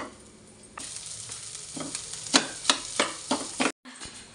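Hot oil sizzling in a kadhai on a gas burner while a metal spatula stirs and scrapes it. In the second half come a quick run of sharp metal clicks and taps against the pan.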